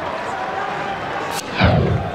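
Steady noise from a football crowd, then about a second and a half in a transition sound effect: a sharp click, a quickly falling whoosh and a deep boom, the loudest sound here.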